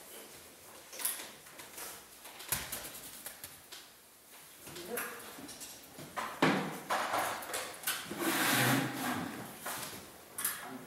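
Boccia balls rolling across a wooden gym floor and knocking softly into other balls. Sharp knocks and a scraping clatter follow later as the boccia ramp is handled and moved.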